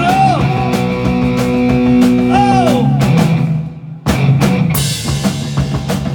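Live rock band playing an instrumental passage: electric guitar with notes that bend up and down, held over bass and a drum kit. About three and a half seconds in the band drops out briefly, then comes back in with a cymbal crash.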